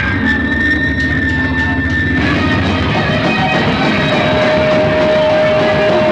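Live rock band playing loudly with electric guitar to the fore. A long high note is held for about the first two seconds, and a lower held note comes in from about four seconds on.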